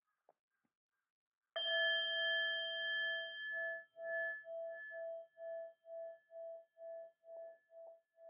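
A singing bowl struck once about a second and a half in, then ringing on with a slow wah-wah pulsing, about two beats a second, as it gradually dies away.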